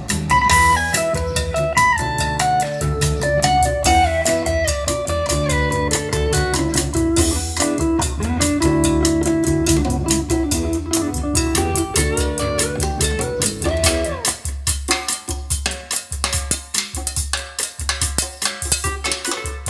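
Music with drum kit, bass and melody played through a pair of AUDIOFLEX AX-1000 floor-standing speakers with Peerless tweeters. Near the end the melody drops out, leaving only drums and bass.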